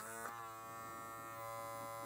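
BaBylissPRO cordless hair clipper's rotary motor running with a steady, even buzz. It keeps running without cutting out now that a bent metal part no longer rubs against the motor.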